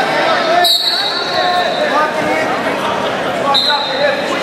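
Referee's whistle blown about half a second in, a sharp steady blast of under a second that starts the wrestlers from the referee's position, then a second, shorter whistle blast near the end. Steady chatter of a gym crowd runs underneath.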